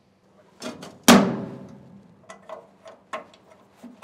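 Hand latch and sheet-metal bottom cover of a Claas Trion combine's auger being worked open. There are a few light clicks, then a loud metallic clang about a second in that rings and dies away over about a second. Several smaller clicks and knocks follow, with another clang near the end.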